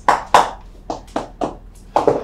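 Sharp hand slaps, about six in quick, irregular succession.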